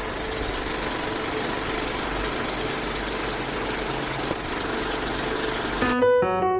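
Old film projector running: a steady rattling whir that starts abruptly and cuts off just before the end.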